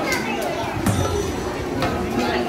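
Crowd chatter from shoppers walking past stalls, with children's voices among it.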